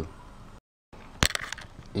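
Low room hiss broken by a short dead-silent gap at an edit, then a few sharp clicks a little over a second in and a soft knock near the end, from handling at a desk.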